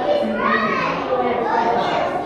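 Children's voices and chatter, with no words clear.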